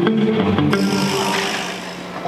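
Live reggae band playing an instrumental jam at soundcheck: electric guitars, bass, keyboard and drums. The playing thins out and drops in level near the end.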